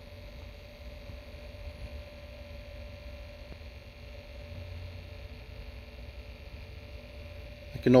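Small motorized display turntable humming steadily as it turns.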